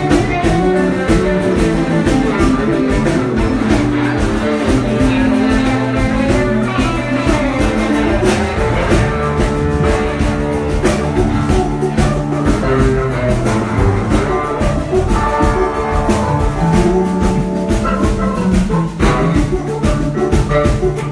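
Live band playing a groove: electric guitar, organ, electric bass and a drum kit keeping a steady beat, with no vocals.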